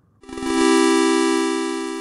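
A single synthesizer chord struck about a quarter second in and held, slowly fading away: an intro music sting.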